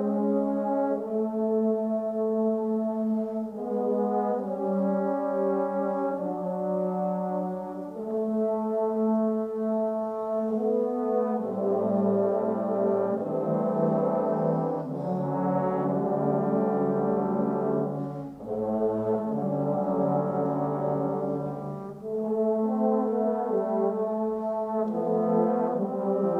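Trombone choir playing sustained, held chords that shift every second or two. About a third of the way in, lower voices join for a fuller, deeper passage, which thins back to the upper chords near the end.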